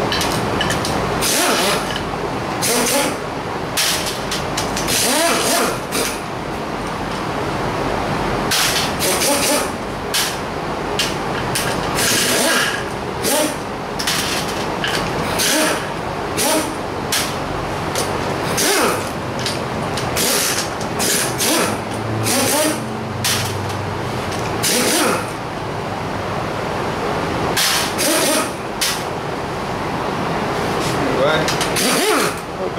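Pneumatic impact wrench firing in a long series of short bursts with air hiss, spinning the nuts off the crankcase of an air-cooled VW 1600 engine being torn down.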